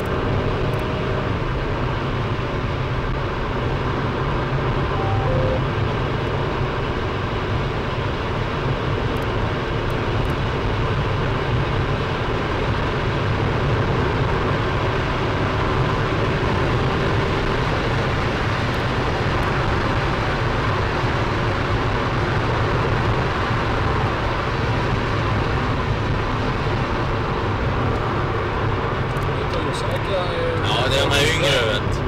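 SAAB 9-5 Aero at high highway speed, heard from inside the cabin: a steady drone of engine, tyre and wind noise.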